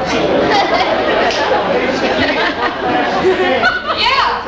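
Overlapping chatter of several people talking at once, with no single voice clear.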